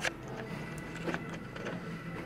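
Steady low hum of a ship's machinery heard in a corridor below deck, with a sharp knock at the start and a softer one about a second in.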